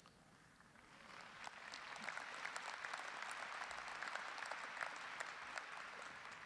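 Audience applauding, swelling up about a second in and tapering off near the end.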